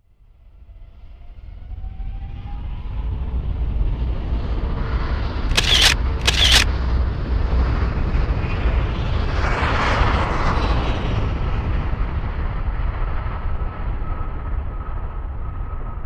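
Tin can packed with about a thousand match heads burning: the fire's rushing noise builds over the first few seconds into a loud, steady flare. Two sharp cracks come about six seconds in.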